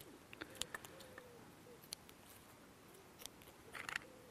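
Faint, scattered clicks and snips: small scissors trimming surplus PVA tape from a tied-off PVA bait bag.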